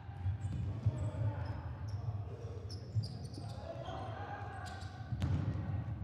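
Futsal ball being kicked on a wooden indoor court, a few sharp knocks over a low hall rumble, with short high sneaker squeaks and players calling out faintly.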